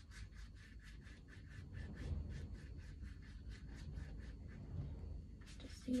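Watercolour brush stroking across textured watercolour paper, quick repeated strokes at about four or five a second, stopping about five seconds in.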